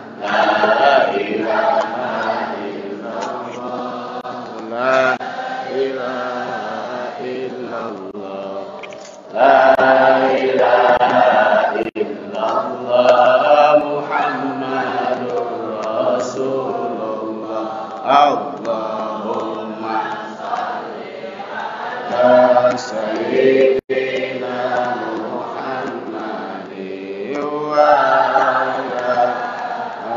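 A group of voices chanting devotional verses together, with long drawn-out notes. There is a brief pause about nine seconds in, after which the chant comes back louder.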